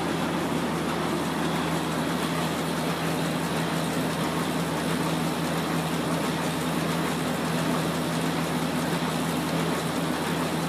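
Heidelberg QM-DI direct-imaging offset press under power, running with a steady mechanical hum and low drone that does not change.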